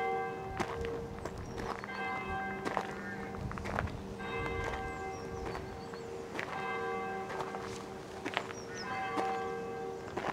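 A church bell struck at a slow, even pace, about every two and a half seconds, each stroke ringing on over a lingering hum. Footsteps crunch on a gravel path.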